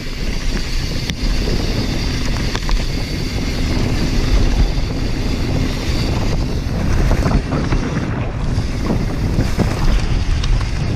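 Wind rushing over the microphone of a helmet- or bike-mounted action camera on a mountain bike descending a dirt trail at speed, with a deep buffeting rumble, tyres running on loose dirt and the bike's rattles. Short knocks and clatters come thicker in the second half, over rougher ground.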